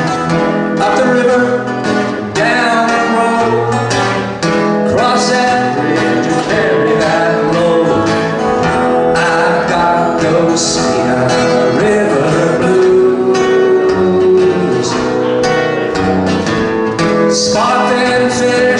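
A solo blues song played live on an acoustic guitar, picked and strummed steadily, with a man singing over it at times.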